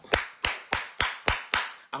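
A man clapping his hands six times in a steady rhythm, about three claps a second.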